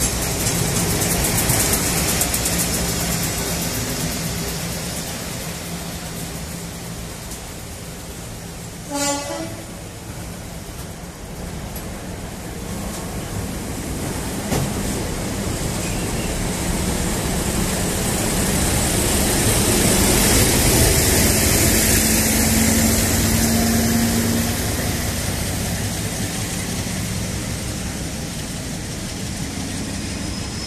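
Colas Rail class 56 diesel locomotives on a Rail Head Treatment Train passing at close range: the heavy diesel engine runs steadily while the tank wagons roll by. A short pitched tone sounds about nine seconds in. The engine noise swells again to its loudest between about eighteen and twenty-four seconds, then eases off as the train moves away.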